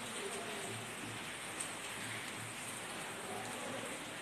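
Marker pen writing on a whiteboard, with a few faint short squeaks over a steady hiss.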